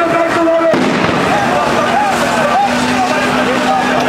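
Police water cannon spraying a jet of water: a loud continuous rush with a steady low hum from the truck. A crowd is shouting over it.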